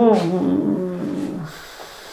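A man's drawn-out hesitation "nuuu", held for about a second and a half with a slowly falling pitch, then quiet room tone.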